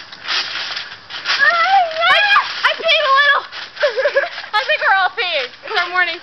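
Girls' high-pitched voices squealing and laughing, without words, over the noisy thumping of bouncing on a trampoline mat.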